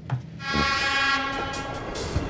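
Horn of a Czech class 810 (M152.0) diesel railcar sounding one long blast, starting about half a second in, loudest at first, then fading.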